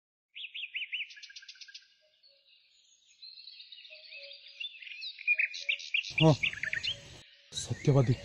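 Small birds chirping and twittering in quick high notes: a short run of chirps, a pause, then a longer stretch of song from about three seconds in. About six seconds in, a person's voice comes in under the birds.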